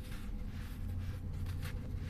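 Dry sand-cement powder handled by bare hands: a few soft, gritty scratches and rustles as a crumbly sand-cement ball is lifted and loose powder is scooped and let fall, over a steady low hum.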